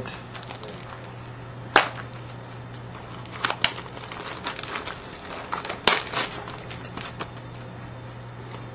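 Hands handling trading-card packaging, a cardboard retail blaster box and its wrappers. There is one sharp snap about two seconds in, then spells of crinkling and crackling around three and a half and six seconds, over a low steady hum.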